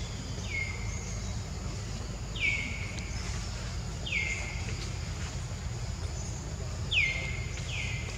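A bird calling repeatedly: five short, clear whistles, each sliding quickly downward in pitch, spaced one to three seconds apart. A steady low rumble runs underneath.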